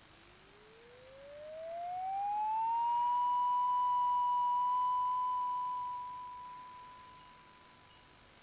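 A single electronic tone that slides up in pitch over about three seconds, then holds one steady note, swelling and then fading away near the end.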